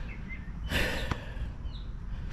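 A person's single breathy exhale, like a sigh, about three-quarters of a second in, over a low steady background rumble.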